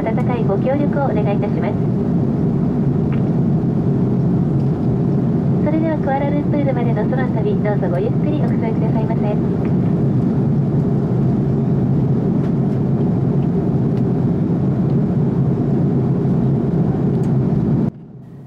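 Steady low roar of a jet airliner's cabin in flight, with muffled voices talking briefly near the start and again about six to nine seconds in.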